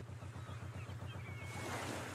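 Faint harbour ambience from a children's TV soundtrack: a wash of sea waves, with a low, evenly repeating pulse underneath and a short, thin high glide near the end.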